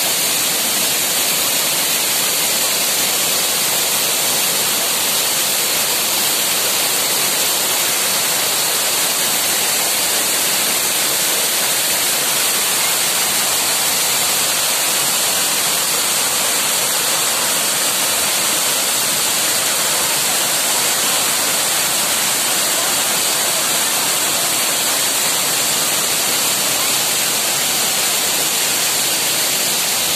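Small waterfall cascading over rock boulders, heard close up: a steady, loud rush of falling and splashing water.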